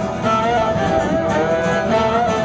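Live band music between sung lines: a fiddle playing held notes over strummed guitar and the rest of the band.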